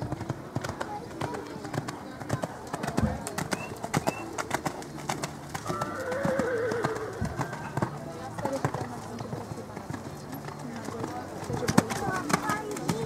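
Hoofbeats of a horse cantering on sand footing, a run of short dull strikes, with people talking in the background.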